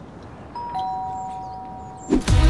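Doorbell chime rung from a bell push by a front door: a two-note ding-dong, the higher note first and the lower one a moment later, both ringing on and slowly fading.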